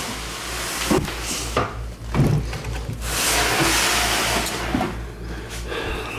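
Plastic tubs of a snake rack being slid shut and pulled out: a few knocks, then a long scraping slide about three seconds in.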